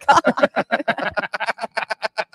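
Loud laughter, a rapid run of short bursts.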